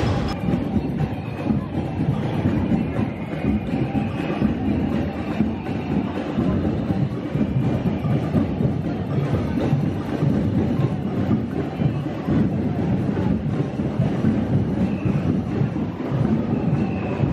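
Crowd noise from a large street protest: a steady, dense rumble of many voices and movement, with no single voice standing out.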